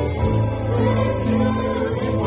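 Live worship band playing: a woman singing lead over a Roland Juno-DS keyboard and electric guitars, with low notes held for about a second each.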